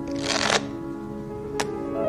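Soft piano music with held notes, over which a deck of playing cards is riffled briefly near the start, and a single sharp click comes about one and a half seconds in.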